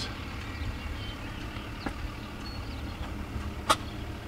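Steady low outdoor rumble with no clear source, broken by two sharp clicks, one about two seconds in and a louder one near the end.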